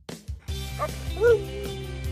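Alaskan Malamute vocalizing: a short call that rises and then falls in pitch about a second in, over soft background music.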